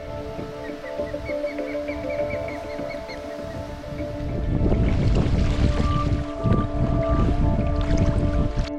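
Ambient music with long held drone tones, and a run of short high chirps in the first few seconds. From about halfway, loud wind buffeting the microphone over choppy lake water comes in under the music.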